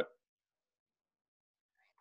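A spoken word cuts off at the very start, then dead silence, with only a faint trace of sound right at the end.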